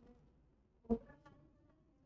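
A quiet pause of room tone, broken about a second in by one short, faint sound, with a faint hum after it.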